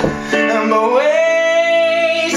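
A man singing one long note that glides up and then holds steady, over sustained chords played on a digital piano.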